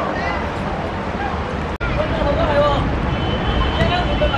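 Voices of players and spectators shouting on a football pitch, heard from a distance, over a steady low rumble on the microphone. The sound drops out for an instant about two seconds in.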